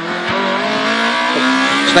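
Rear-wheel-drive Toyota Corolla rally car's engine under hard acceleration away from the stage start, heard from inside the cabin. The engine note climbs steadily after a brief dip right at the start.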